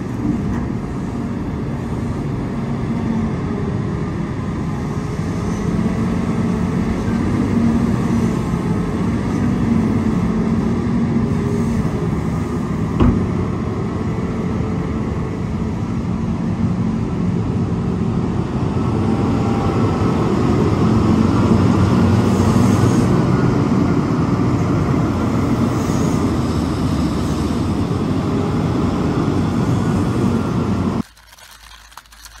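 Large hydraulic mining shovel's diesel engine and hydraulics running steadily under load as it digs rock and swings to load a haul truck. There is one sharp knock about 13 seconds in, and the machine grows louder around two-thirds of the way through.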